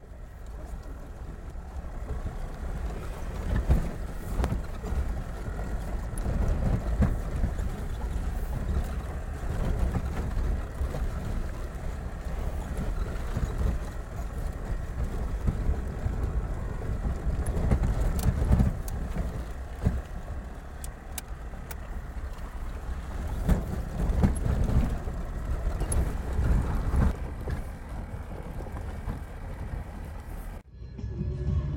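Inside a car driving a rough, unpaved mountain road: a steady low rumble of engine and tyres that swells and eases, with occasional knocks and jolts from the bumps.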